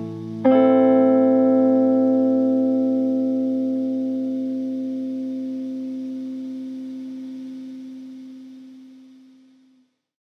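Closing guitar chord of a folk-punk song, struck once about half a second in and left to ring, dying away slowly over about nine seconds until it fades out.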